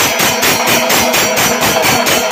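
Chenda melam: chenda drums struck with curved sticks together with clashing ilathalam hand cymbals, played loud in a fast, even rhythm of about seven or eight strokes a second, with the cymbals ringing over the drums.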